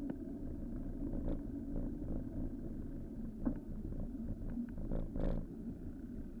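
Street traffic: vehicle engines running steadily, with a few short knocks and clicks scattered through it, the largest about five seconds in, heard from a bicycle-mounted camera.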